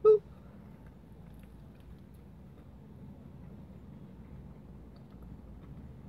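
A man chewing a mouthful of burger, faint soft clicks of chewing over a low steady hum inside a car. A brief vocal sound comes right at the start.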